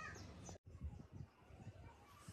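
Very faint background with one short crow caw right at the start. After a sudden cut a little over half a second in, a few faint low knocks follow.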